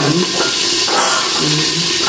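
Food sizzling steadily in stainless steel cookware on the heat, a continuous even hiss.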